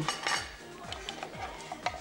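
Light clinks and clatter of dishes and cutlery at a café table over quiet background music, busiest in the first half second.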